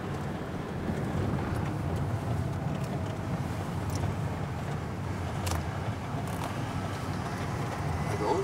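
Steady low rumble of a car on the move heard from inside the cabin: engine and tyre noise at a constant level, with a few faint clicks.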